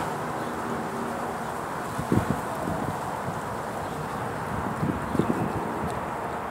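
Steady background rumble and hiss, with a few short, soft sounds about two seconds in and again near five seconds.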